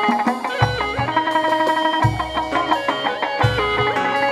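Chầu văn ritual music played without singing: a plucked đàn nguyệt (moon lute) melody over low drum beats that fall about every one and a half seconds.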